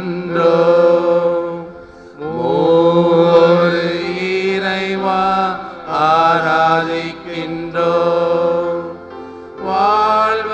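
A slow devotional adoration hymn sung in Tamil, in long sliding phrases over a steady held accompaniment tone, with brief breaths between phrases about two and six seconds in.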